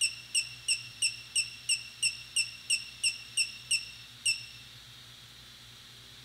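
A run of about thirteen short, high electronic beeps, about three a second, with the last one after a slightly longer gap, then they stop about four seconds in. They sound while the gimbal controller's IMU accelerometer calibration step runs, which the sensor then reports as complete.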